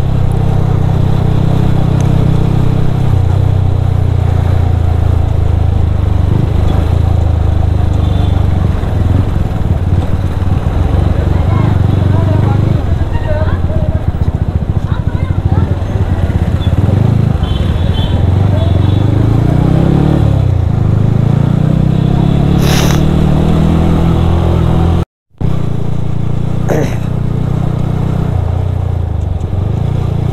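Yamaha sport motorcycle engine running as it is ridden through city traffic, its note rising and falling with speed and gear changes, with wind rush on the microphone. The sound cuts out completely for a moment about 25 seconds in.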